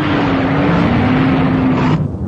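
A loud, steady roaring noise with a low droning tone beneath it that slowly sinks in pitch, cut off suddenly at the very end.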